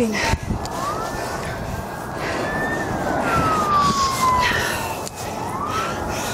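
Police car siren wailing, its pitch rising and falling slowly with each sweep lasting about two seconds.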